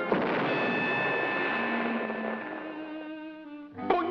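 Orchestral cartoon score: a sudden noisy crash at the start, with held string tones over it, fades away over about three seconds. The music then goes quieter, and a sharp hit lands right at the end.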